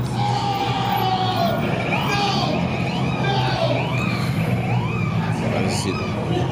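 Steady low hum of a car engine heard from inside the cabin as the car rolls slowly, with indistinct voices and music over it.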